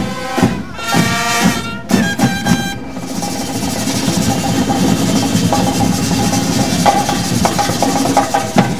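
A marching band playing: brass chords over drums for about the first three seconds. Then the brass drops out and the drums carry on under a continuous bright hissing wash.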